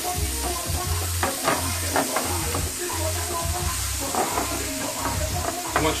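Chopped onions sizzling in oil in a ridged frying pan, stirred with a wooden spatula that scrapes and knocks against the pan at irregular intervals over a steady frying hiss.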